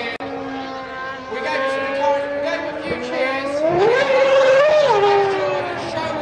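Formula One car's V8 engine running at speed, a high pitched note that climbs steeply about three and a half seconds in, holds, then falls away about five seconds in. The car is the 2008 McLaren-Mercedes MP4-23 with its 2.4-litre Mercedes V8.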